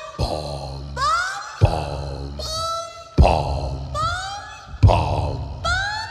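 Experimental electronic sound-design cue from an animated film's score: a looping rhythm of deep thumps about every second and a half, each followed by swooping pitched tones, some sliding down and others rising, with grunt-like vocal sounds. The composer imagined it as crazy angry frog people hopping around.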